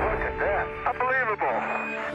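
A voice coming over a radio link, too unclear for words to be made out, with sustained music underneath.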